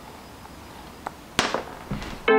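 Handling clicks from a new suspension lower ball joint and its plastic protective caps: a faint click about a second in, then a sharp, louder snap with a short tail, over quiet room hiss.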